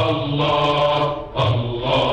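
Male voice chanting an Arabic religious supplication (ibtihal) in long held notes, with a brief break between phrases about one and a half seconds in. It is an old radio recording with a dull top end.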